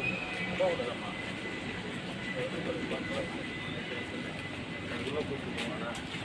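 Steady machinery noise of a bottling plant yard with a faint steady high whine, and faint voices now and then.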